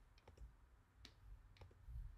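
Faint, irregularly spaced clicks of a computer mouse and keyboard as stray pieces of a drawing are selected and deleted.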